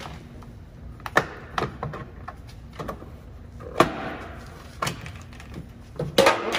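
Plastic trim clips of a 2007 Toyota Sequoia liftgate trim panel popping loose as the panel is pried off with a clip tool: about five sharp snaps spread out, the loudest a little before four seconds in, followed by a short scrape of the panel.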